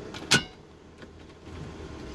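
The hard plastic lid of a VW Crafter's top dashboard storage compartment shut with one sharp clack about a third of a second in, ringing briefly.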